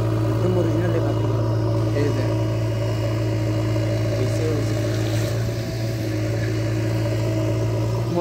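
JCB backhoe loader's diesel engine running steadily at a constant speed, a low even hum, with faint voices in the background.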